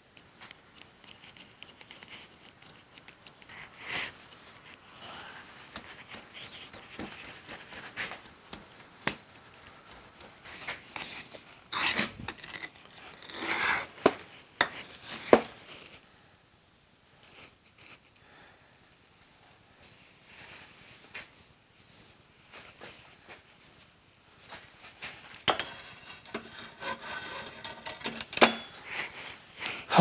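Petrobond foundry sand being rammed and worked in a steel moulding flask on a steel bench. Scattered dull knocks and scrapes build to a louder cluster of knocks and scraping about midway. After a quieter stretch, a sharp metal clink and more scraping come near the end as the flask is handled.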